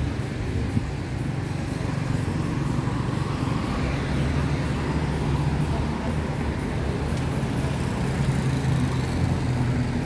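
Road traffic on a street, with a steady low engine drone from passing vehicles.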